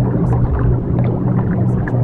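Ambient subliminal backing track: a steady low droning hum with a dense rushing wash above it and a few faint high ticks. The hum is the kind of tone such tracks use for a delta-wave frequency layer.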